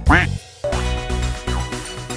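A single cartoon duck quack at the start, then a brief pause before upbeat electronic children's music with a steady beat comes in.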